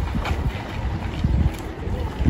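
Wind buffeting the microphone, a gusty low rumble that rises and falls.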